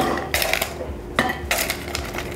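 Ice cubes clinking against metal as they are taken from a stainless steel bowl and dropped into a copper mug: a few sharp clinks, the loudest right at the start.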